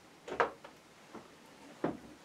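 Three short, light knocks and clicks from brushes and a palette being handled.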